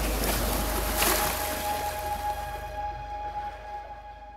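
Splashing water noise under a few long held music notes, the water fading away partway through and the whole sound fading out toward the end.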